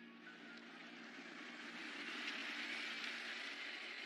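A car passing close by: a smooth rush of tyre and engine noise that swells to a peak about two and a half seconds in, then eases off a little.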